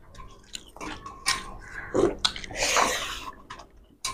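Eating by hand: fingers squishing and mixing rice and fish curry on steel platters, with chewing and mouth clicks in irregular short bursts. A longer hissing, breathy sound comes about two and a half seconds in.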